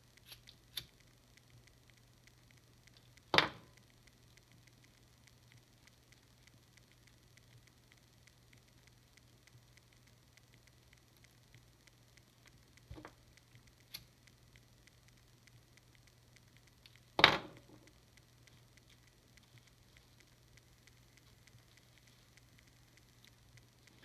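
Quiet room with a faint steady low hum, broken by two sharp clicks about three seconds in and about seventeen seconds in, and a few lighter ticks, as small plastic figure parts and tools are handled on a desk.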